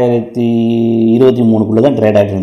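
A man's voice holding long, drawn-out hesitation sounds at a steady pitch, broken once briefly about a quarter of a second in.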